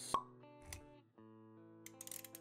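Intro music with a sharp pop a moment in, followed by a softer low thud; the music dips briefly around a second in, then carries on with light clicks.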